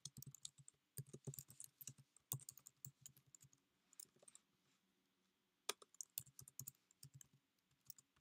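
Faint typing on a computer keyboard: quick runs of keystrokes with a pause of about a second in the middle, dying away near the end.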